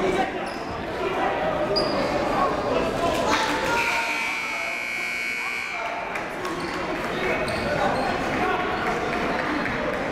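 Gymnasium scoreboard buzzer sounding once, steadily, for about two and a half seconds a few seconds in, marking the end of a timeout, over the background noise of the gym.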